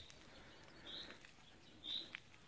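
A bird calling faintly, one short high note about once a second.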